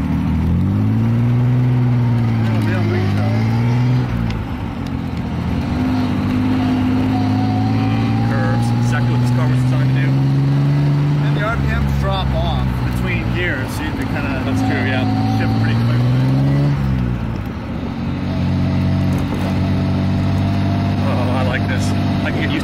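1967 Austin-Healey 3000 Mk III's straight-six engine and exhaust pulling the car along under way, heard from the open cockpit. The engine note rises under throttle, holds steady, and falls back sharply three times, about four, eleven and a half, and seventeen seconds in, climbing again after the first two.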